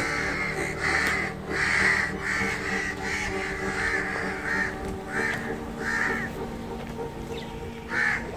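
A flock of crows cawing repeatedly, roughly one to two caws a second, over a steady low background tone.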